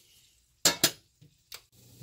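Metal kitchen tongs clinking: two sharp clicks about a fifth of a second apart, then a fainter one.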